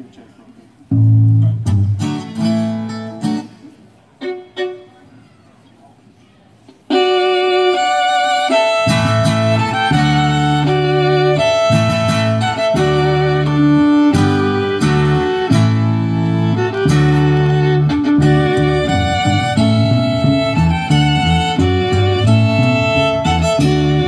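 A live acoustic string trio of fiddle, acoustic guitar and upright bass starts a song. A few sparse opening notes come first, then about seven seconds in the fiddle and guitar launch into the tune, and the upright bass joins a couple of seconds later.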